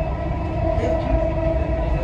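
Inside a moving Dubai Metro train: the steady rumble of the car running on the rails, with a steady whine held over it.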